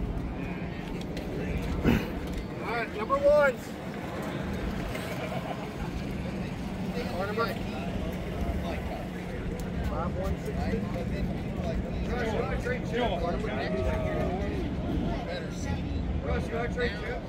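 Several people talking in the background over a steady low hum, with a brief sharp knock about two seconds in.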